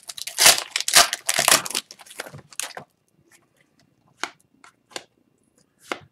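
Foil wrapper of an Upper Deck hockey card pack torn open and crinkled for about three seconds, followed by a few short, soft clicks.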